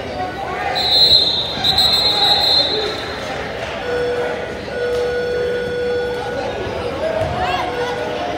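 Sounds of an indoor basketball game in a gym: a basketball bouncing amid people's voices. Two high-pitched steady tones sound one after the other in the first few seconds, and a lower steady tone follows around the middle.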